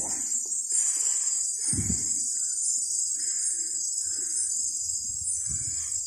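A steady, high-pitched insect chorus that swells about once a second.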